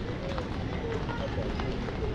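Footsteps walking on a wet stone-paved street, over a steady street bed with faint, brief voices of passers-by.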